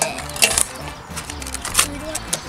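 Small plastic toy packaging being opened by hand: a few sharp clicks and light rattles as Shopkins blind baskets are prised open.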